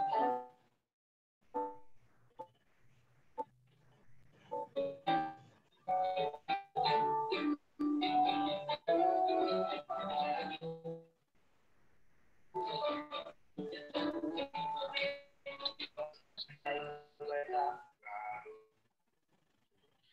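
A recorded club anthem (a 'mars', or march song) playing from a media file: voices with musical backing. It drops out in short gaps, most clearly for about a second and a half near the middle.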